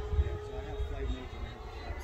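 Electric ducted-fan RC jet flying overhead: a steady fan whine that fades about a second in, over a low, uneven rumble.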